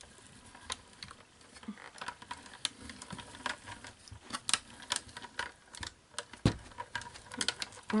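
Hand-cranked manual die-cutting machine working felt through its rollers: an irregular run of light clicks and taps, several a second, from the crank and the cutting plates, with one heavier knock about six and a half seconds in.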